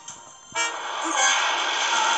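A loud rushing, noisy sound effect from the animated story app, starting about half a second in and holding steady.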